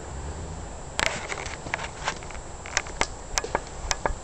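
Range Rover's V8 engine running low in the distance, with a series of sharp, irregular clicks and cracks close to the microphone starting about a second in.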